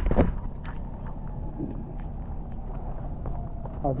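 Steady low rumble of wind and handling noise on a handheld camera's microphone, with scattered light ticks and a knock just after the start.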